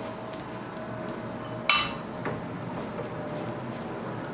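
A pan and spatula being handled: one sharp metallic clink with a short ring a little before halfway, then a few light knocks, over a steady low hum.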